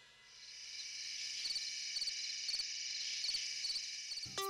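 Crickets chirping in a night-time ambience, fading in after a moment of silence, with short chirps about twice a second over a steady high trill.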